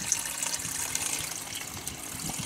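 Pumped water welling up through the centre inlet pipe of a home-made bucket radial flow filter and spilling over its rim as a bubbler, a steady flow of water.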